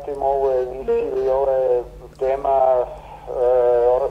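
A man's voice speaking over a telephone line, over a steady low hum.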